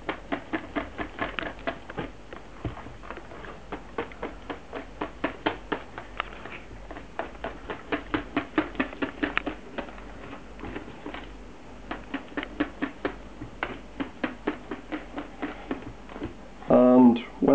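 Wire balloon whisk beating pancake batter in a plastic bowl, its wires clicking against the bowl's side about five times a second, with brief pauses about two-thirds of the way through.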